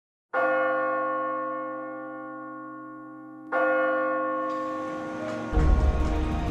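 A large bell struck twice, about three seconds apart, each strike ringing on with a long, slowly fading hum of many tones. Near the end a music track with a heavy bass beat comes in.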